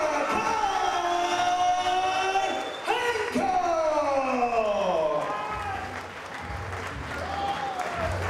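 Ring announcer's drawn-out call through a microphone and PA, declaring the fight's winner: two long held notes, the second sliding down in pitch. Crowd applause and cheering run underneath.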